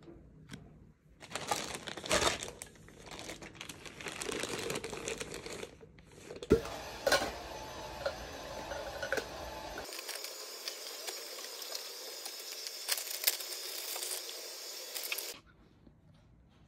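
Plastic zip bags crinkling and rustling while plastic baby bottles and caps are handled and unpacked, with sharp clicks and knocks as bottles touch each other; the loudest knock is about six and a half seconds in.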